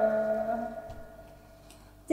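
The last held note of a woman's Thai khắp folk song fading away over about a second, followed by a faint pause between sung verses with a couple of soft ticks.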